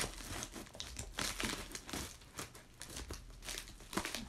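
Plastic mailing bag crinkling and rustling in irregular bursts as it is cut open with scissors and pulled apart by hand.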